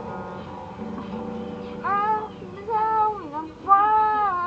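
A boy singing to his own acoustic guitar: the strummed chords ring softly at first, then his voice comes in about two seconds in with long, held, slightly wavering notes.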